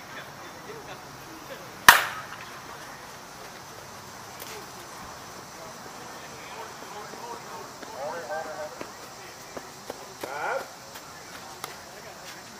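A slowpitch softball bat striking the ball once, a single sharp loud hit about two seconds in. Voices call out faintly later.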